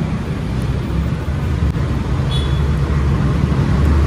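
Steady low rumble of outdoor background noise, with a brief faint high tone about two seconds in.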